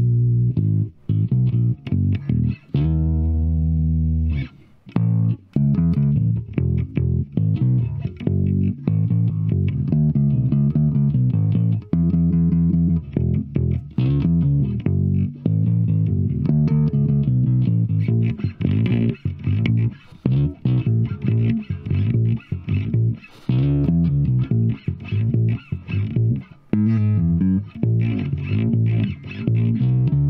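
Epiphone EB-0 short-scale, all-mahogany electric bass, finger-plucked through a Zoom G1Xon processor with the tone knob fully up, playing a bass line of separate notes with short gaps and one longer held note about three seconds in.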